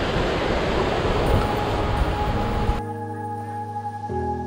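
Surf breaking against a rocky shore, a steady rush of noise that cuts off suddenly about three seconds in. Slow, sustained keyboard music fades in underneath it and carries on alone after the cut.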